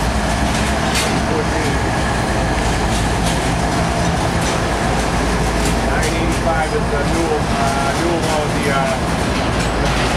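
A freight container train rolling past on the rails, a loud steady rumble with scattered sharp clicks from the wheels.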